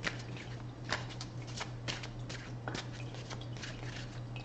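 A deck of tarot cards shuffled by hand: a quick, irregular run of light card clicks.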